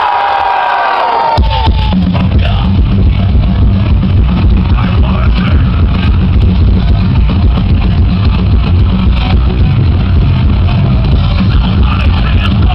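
Thrash metal band playing live through a loud PA, recorded from among the crowd. A held high note fades out about a second and a half in, then the full band comes in with drums and distorted guitars.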